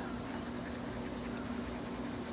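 A steady machine hum holding one low, even pitch, over a faint hiss.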